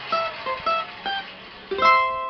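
Cavaquinho played solo: a short phrase of single plucked notes, then a final strummed chord near the end, the loudest sound, left ringing.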